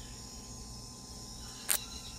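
Recorded Peruvian rainforest ambience played from a speaker: a steady chorus of insects chirring. A single sharp click sounds near the end.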